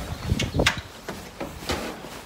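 Footsteps while walking, with handheld-camera movement: a run of soft knocks about two or three a second over faint outdoor background noise.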